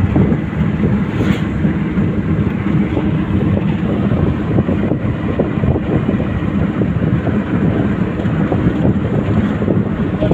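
Cabin noise inside a moving vehicle on an unpaved road: a steady, loud rumble of engine and tyres with continual small knocks and rattles from the rough surface.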